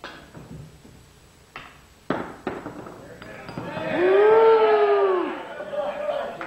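A cue tip strikes a pool ball, followed by three sharp ball clicks over the next two and a half seconds. Then comes a long vocal cry that rises and falls in pitch, the loudest sound here.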